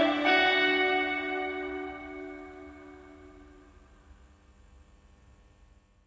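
Background music ending on one held chord, struck just after the start, that fades away to near silence over about four seconds.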